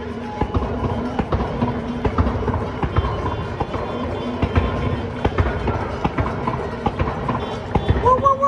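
Many people clapping and cheering from apartment windows across city blocks, a dense, irregular clatter of claps and bangs, with music playing beneath.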